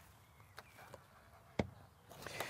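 Quiet, with a few faint ticks and one sharp click about one and a half seconds in.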